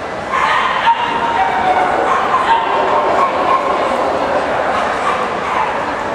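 A dog whining and yelping in long, high, drawn-out cries over the background noise of a busy hall.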